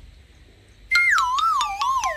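Comedic sound effect added in editing: a whistle-like tone that starts suddenly about a second in and slides down in pitch with a slow wavering wobble, over light regular ticks.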